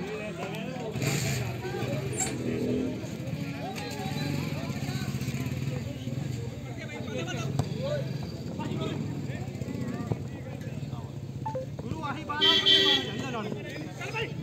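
Footballers shouting and calling to each other across the pitch, with one loud shout near the end. A steady low engine hum runs underneath.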